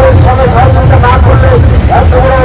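Loud singing voice with long held notes that glide between pitches, over a steady low rumble.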